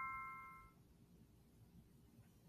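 The fading tail of an electronic chime: a few clear ringing tones die away within the first second, followed by near silence.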